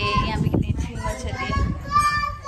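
Lively, high-pitched voices talking and calling out over one another, with a low rumble of handling noise as the phone is carried along.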